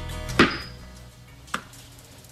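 A newspaper slapped down hard, one sharp smack about half a second in, followed by a faint click about a second later, with soft music fading out underneath.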